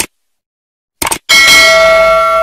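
Subscribe-button animation sound effects: short clicks, then a notification bell sound effect ringing about a second in, a ding of several steady tones that holds on.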